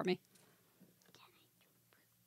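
A spoken word ends right at the start, followed by faint whispering and a few soft, short sounds over near silence.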